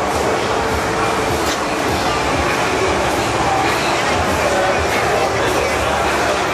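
Haunted-house maze soundscape: a loud, steady wash of rumbling noise with voices mixed in.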